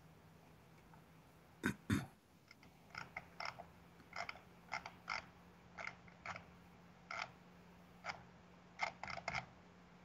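Faint, irregular clicking of a computer keyboard, about one or two clicks a second, over a steady low hum, after two louder knocks a little under two seconds in.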